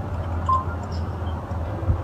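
Steady low background hum with faint noise over it, in a pause between spoken phrases.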